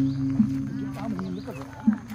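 A deep, bell-like ringing tone, like a singing bowl or gong, fades slowly from a strike just before. Softer strikes come about half a second in and again near the end, with small bird-like chirps over it.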